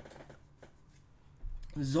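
A few faint clicks, like a computer mouse scroll wheel turning as the page is scrolled. About a second and a half in, a man's voice comes in.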